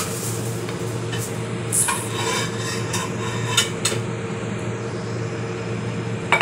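A spatula scraping and clinking against a pan while stirring rice noodles, with several sharp clinks between about two and four seconds in. A steady low hum runs underneath.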